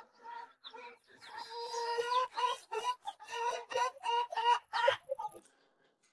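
Chicken clucking: a quick run of short, pitched clucks, about three or four a second. They grow louder about a second in and stop about a second before the end.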